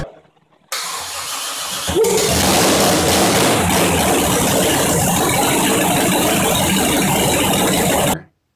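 Swamp buggy's 468ci Chevy big-block V8 being started: about a second of cranking, then it catches and runs loud and steady.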